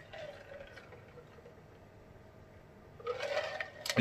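Faint sounds of a man drinking from a large plastic jug, then a louder breath out about three seconds in.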